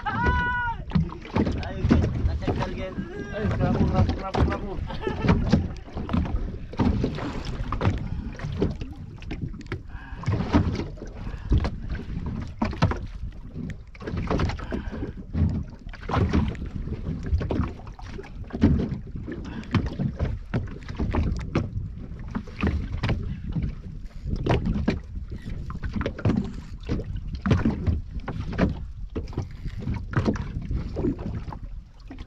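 Water slopping and slapping irregularly against the hull of a small wooden boat on a choppy sea, with low rumbling and knocks throughout. A brief voice sounds in the first second.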